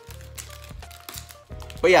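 Foil Pokémon Vivid Voltage booster pack crinkling as it is torn open by hand, faint against quiet background music with a steady bass. A voice comes in near the end.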